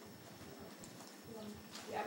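Quiet room tone with a faint voice in the second half, growing louder at the very end as speech begins.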